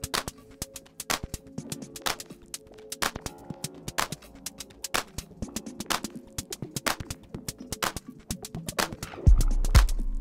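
Ro-minimal (minimal house) track playing back from Ableton Live: a steady pattern of crisp percussive clicks and hi-hats over held synth tones. About nine seconds in a deep kick and bass come in and the music gets louder.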